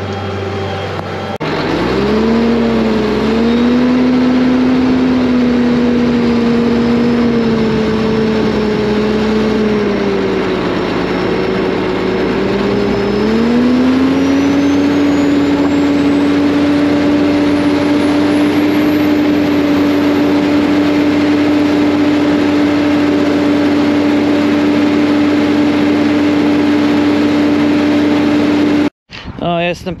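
New Holland tractor's diesel engine working hard as it pulls a cultivator deep through the soil, heard close to the exhaust stack. Its note sags under the load for a few seconds, then picks up and holds steady at a higher pitch. The sound cuts off abruptly near the end.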